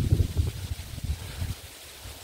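Wind buffeting the handheld camera's microphone: an uneven low rumble, strongest at first and dying down about a second and a half in.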